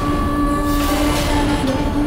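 Dramatic background-score sting: a dense rushing noise over a low rumble, with steady droning tones held underneath.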